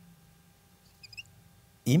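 Marker pen squeaking briefly on a whiteboard about a second in, a few short high chirps over low room tone; a man's voice begins speaking near the end.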